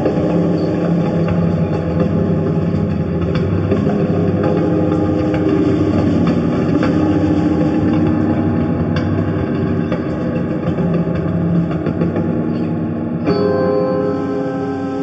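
Slow, droning electric guitar music, a thick wash of sustained low notes. About 13 seconds in it changes suddenly to clearer, ringing higher tones.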